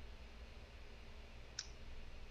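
Quiet room tone with a steady low hum, broken by a single short click about one and a half seconds in.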